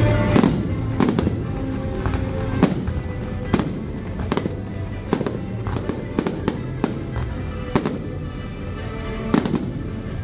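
Aerial firework shells bursting in more than a dozen sharp bangs at irregular intervals, heard over music.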